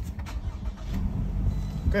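A 2018 Toyota RAV4's 2.5-litre four-cylinder engine started with the push button, catching about half a second in and settling into a steady idle.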